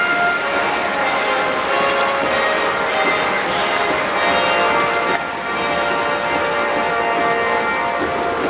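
Music playing over a stadium's public-address system, made of many overlapping, ringing, bell-like tones that are held steady.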